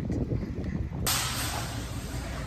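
Low outdoor rumble of a handheld phone recording on the move. About halfway through it gives way abruptly to the steady hiss of a big store's indoor room tone.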